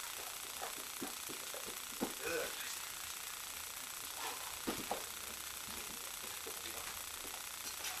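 A few soft thuds and shuffles of people stepping and moving on foam floor mats, with faint low voices in between, over a steady hiss.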